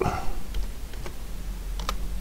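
Slow typing: a few separate clicks about half a second apart as text is entered one letter at a time, over a low steady hum.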